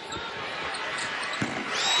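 A basketball being dribbled on a hardwood arena floor, a few dull thuds, over steady arena crowd noise that swells near the end as a shot goes up.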